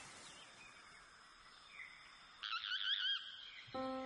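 The opening of a background music track: a faint outdoor hiss with light bird chirps, then a loud wavering bird-like whistle a little past halfway, and sustained instrument notes starting near the end.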